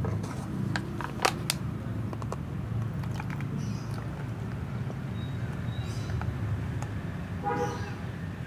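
A few sharp plastic clicks from a bottle and measuring cup being handled in the first second and a half, over a steady low rumble. Near the end comes one short pitched call.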